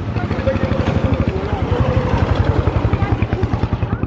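Small motorcycle engine running close by as the bike rides past, a rapid, even low beat throughout.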